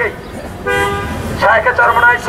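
A vehicle horn sounds one steady note for about half a second, a little under a second in.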